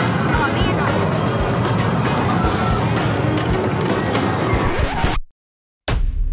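Busy arcade din: music mixed with voices over a dense wash of machine noise, cutting off suddenly near the end.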